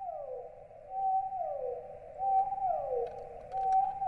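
Sad whale-song sound effect: a mournful pitched wail held briefly, then sliding down, repeated about every 1.3 seconds, three times over.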